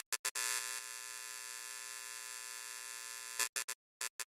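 Electronic end-card sound effect: a few short glitchy stutters, then a steady electric hum-like buzz for about three seconds, which breaks back into stutters near the end.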